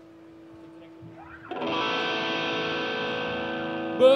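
Distorted electric guitar: a faint ringing note, then a short rising slide, and about a second and a half in a loud chord struck and left ringing steadily.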